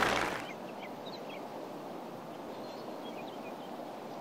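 Quiet open-air ambience, a steady low hiss, with a few faint short bird chirps about a second in and again a little past three seconds.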